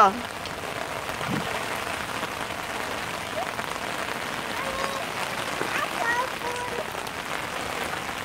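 Steady rain falling on wet concrete and a yard, heard as a continuous, even hiss.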